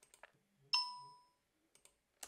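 A few faint mouse clicks and a single short electronic ding about three-quarters of a second in that fades out within half a second.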